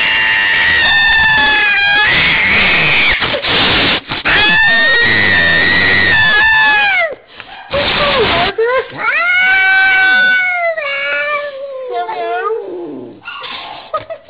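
An angry, cornered cat yowling in three long drawn-out howls that waver in pitch, broken by sharp hisses between them.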